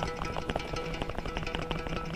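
Telecaster-style electric guitar picked in a quick run of single notes, struck with the tip of the index finger and driven by the wrist rather than with a pick.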